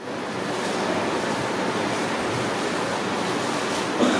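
Steady, even hiss of static-like noise filling the sound track, swelling up over the first half second after a brief dropout in the audio, with no speech in it.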